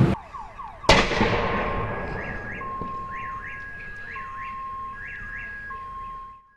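A car alarm sounding during a car fire, cycling through short falling chirps and then steady notes broken by quick rising whoops. About a second in, a single loud bang with a long decaying tail cuts across it: a car tyre bursting in the fire.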